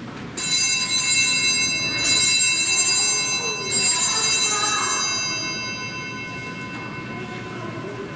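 Altar bells rung three times at the elevation of the chalice during the consecration, each ring a bright shimmer of high tones that fades away over a few seconds.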